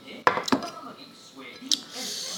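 Cutlery knocking against a plate while eating: two sharp clacks about a quarter second apart, then a fainter click near the end.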